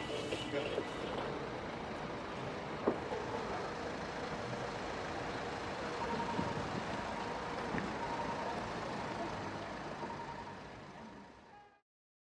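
Street traffic noise, a steady rumble of passing vehicles, with an intermittent beeping tone about halfway through; it fades out near the end.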